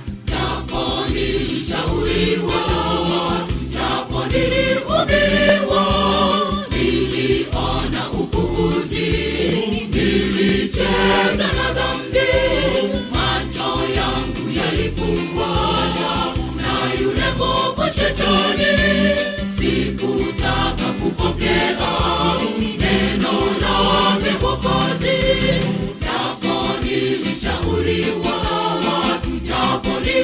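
Gospel choir singing in harmony over instrumental backing with a steady bass beat.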